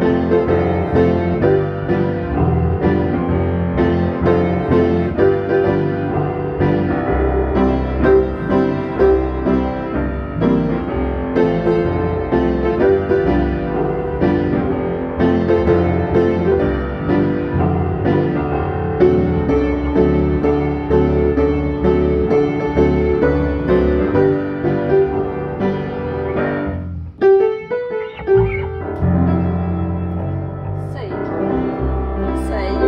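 Upright piano and electric bass guitar playing a tune together, the bass notes running under the piano chords. The playing breaks off briefly near the end, then goes on.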